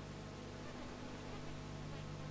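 A steady low buzzing hum over even background hiss.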